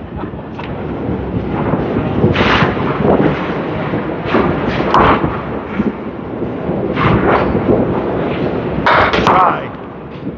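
Candlepin bowling balls rolling on wooden lanes and small candlepins clattering as they are hit, with several sharp crashes spread through and the loudest cluster of crashes near the end.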